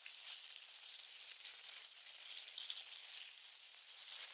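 Faint steady hiss, mostly high in pitch, with no distinct events.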